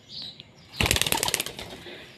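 Pigeon's wings clapping and flapping in a rapid run of beats as it takes off. The beats start just under a second in and last under a second.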